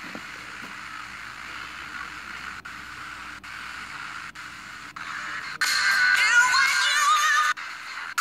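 Sony Ericsson phone's FM radio being tuned step by step: a weak station mostly lost in hiss, broken by brief dropouts. About five and a half seconds in, a stronger station with music and singing comes in clearly for two seconds and then cuts out as the tuner moves on.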